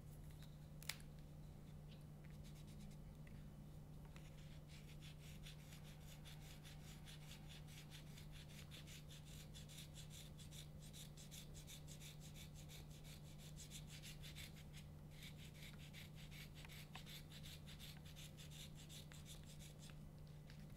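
Knife scraping reed cane held on a reed-making easel, profiling (thinning) the cane for a tenor krummhorn reed: a quiet, rapid run of short scraping strokes that starts about five seconds in, breaks off briefly about fifteen seconds in and resumes. A single click about a second in.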